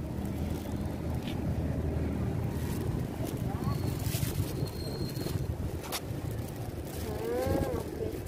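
Plastic carrier bags crinkling and rustling as they are pulled open by hand, over a steady low rumble. A voice is heard briefly near the end.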